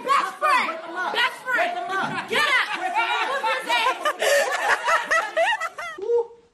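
Excited voices of young people talking rapidly over each other, with quick rises and falls in pitch and some snickering.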